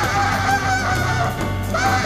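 Tenor saxophone playing a wavering, vibrato-laden line in a live jazz quartet, over bass and drums. The horn drops out briefly about a second and a half in and comes back in with a rising note just before the end.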